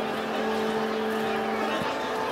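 Psybient downtempo electronic music: a held low tone with a higher partial sits over a dense, hissy textured bed, and the tone stops shortly before the end.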